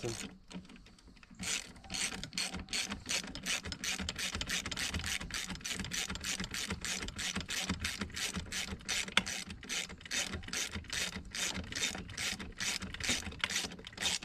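Hand ratchet wrench clicking steadily, about four clicks a second, as a bolt on a boat-seat pedestal mount is driven in. The clicking starts about a second and a half in.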